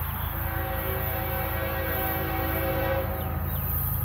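Air horn of an approaching CSX freight locomotive sounding one long, steady chord for about three seconds, over a steady low rumble.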